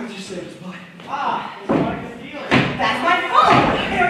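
Actors' voices on a theatre stage, with a slam and heavy thumps in the second half as a second actor comes on stage.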